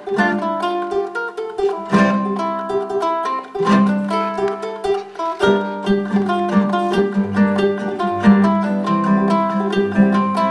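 Ohana CK-35CE concert ukulele and nylon-string classical guitar playing a duet: a steady run of plucked notes, with the guitar's low bass notes more prominent in the second half.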